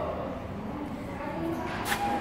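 Low background noise of a large workshop in a pause between speech, with a single short click near the end.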